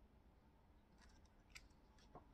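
Near silence: faint room tone, with two faint short clicks, about a second in and again half a second later.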